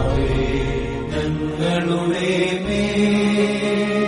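Devotional music with a chanting voice holding long notes over a steady low drone.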